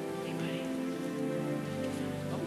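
Soft instrumental music of held, sustained chords, the chord changing about a second and a half in, over a faint hiss.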